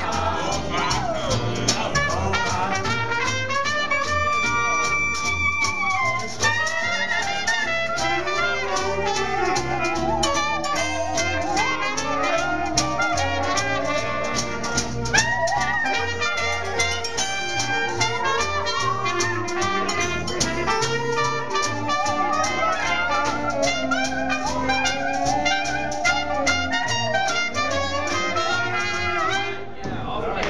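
A small traditional jazz band playing an instrumental chorus: trumpet, clarinet and saxophone lines over upright bass and guitar keeping a steady beat. The tune ends right at the close.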